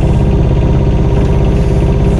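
Mini excavator's small diesel engine running steadily at a constant speed, heard from the operator's seat.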